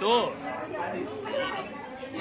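Speech only: a short loud call at the start, then the overlapping chatter of several people in a room.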